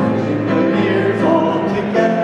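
A small group of men and women singing together in unison with piano accompaniment, holding long notes.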